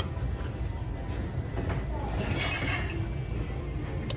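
Background noise of a crowded store: a steady low rumble with faint distant voices, and a light knock of handled ceramics at the start.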